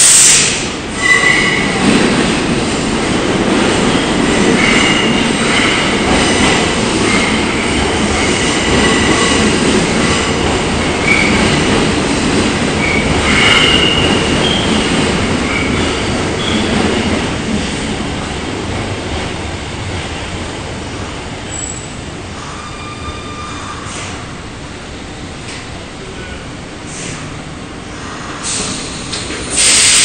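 Tokyo Metro Ginza Line 01 series subway train pulling into a station and slowing. Its wheels squeal against the rails over a steady running rumble for the first half, then the squeal stops and the rumble dies down as it slows. A short loud burst comes at the very start and another near the end.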